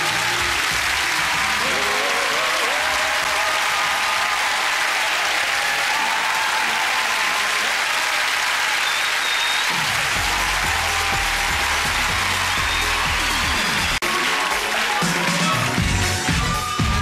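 Studio audience applauding and cheering over the last held notes of a gospel choir. About ten seconds in, a bass-heavy dance track starts underneath, with a brief dropout near the end.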